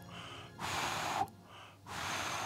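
A person drawing in air noisily, in long hissing breaths: one about half a second in lasting most of a second, another starting at the end.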